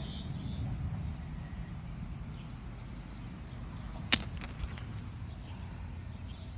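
Rocks being handled and swapped in the hand, with one sharp stone-on-stone click about four seconds in, over a steady low rumble.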